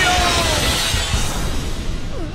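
Cartoon sound effect of a magic energy blast: a crashing, shattering burst that slowly dies away, over background music.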